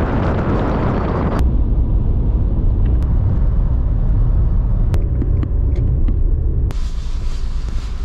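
A car driving: steady low rumble of road and engine noise. A louder rush of wind noise fills the first second and a half, and the sound changes abruptly twice, at about a second and a half and again near the end.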